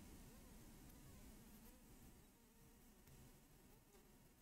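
Near silence: faint room tone and hiss.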